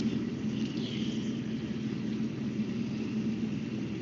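Steady low rumble of background noise with a faint hum, no speech.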